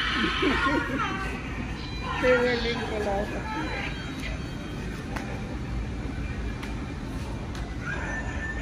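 Indistinct voices over a steady low background hum, with a drawn-out pitched voice sound gliding downward about two seconds in.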